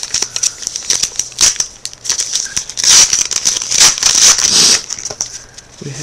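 A foil trading-card pack being torn open and its wrapper crinkled, loudest in the middle stretch.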